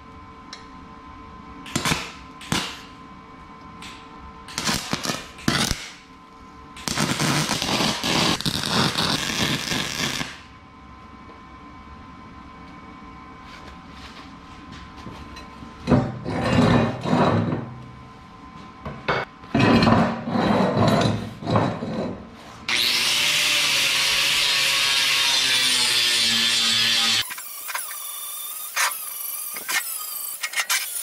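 Electric arc welding on steel tubing: a few brief tack welds, then several welds of a few seconds each, the longest and steadiest about four seconds long, running through the last third.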